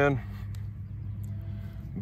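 Hands pressing moist garden soil around a transplanted tomato seedling, soft and faint, over a steady low background rumble. A man's voice finishes a word at the very start.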